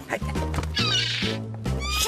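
Cartoon background music, with a seagull's harsh screeching cry about a second in and a falling call near the end.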